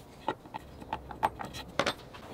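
Light, irregular clicks and taps, about eight in two seconds, from a small wooden block and steel Forstner bits being handled in a plywood bit holder.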